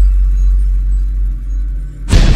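Deep bass rumble from a logo intro's music track, held and slowly fading.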